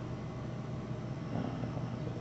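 Steady low background hum with no distinct events, and a faint spoken "uh" near the end.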